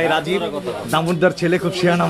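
People talking over one another in a busy shop.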